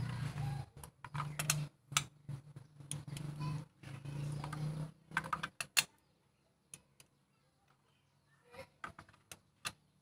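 A click-type torque wrench ratchets a spark plug down into an aluminium-head Gamma 1.6 engine, making a run of sharp metallic clicks. A few louder clicks come just before six seconds in, the wrench's release click that signals the set torque (about 14 to 24 Nm) has been reached. A few light clicks follow.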